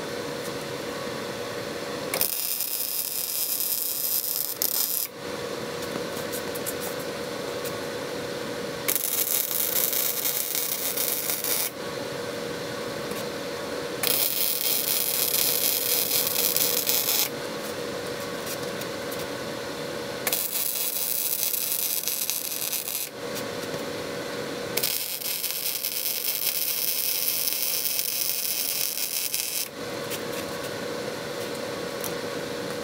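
MIG welder's arc sizzling in five separate beads of about three seconds each, welding 3/8-inch steel plate engine-mount brackets, with short pauses between them over a steady background hum.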